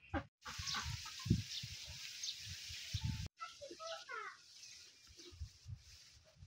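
Domestic chickens clucking in short bursts, with a cluster of quick calls about four seconds in. A steady hiss runs through the first half and cuts off abruptly just after three seconds. Irregular low rumbles continue underneath.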